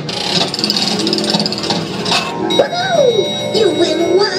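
Dark-ride show soundtrack of music and cartoon sound effects. About halfway in, a steady high ringing tone comes in, and a character's voice slides up and down in an exclamation.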